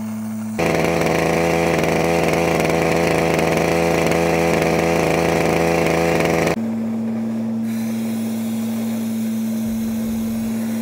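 Septic vacuum truck's pump and engine running steadily while the tank is pumped. About half a second in, the sound jumps louder and lower-pitched with a buzzier tone, and after about six seconds it drops back to a steadier, slightly higher hum.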